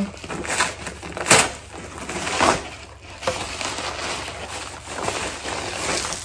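Padded mailer being torn open and handled, with a sharp rip about a second in and another around two and a half seconds, then rustling and crinkling of the envelope.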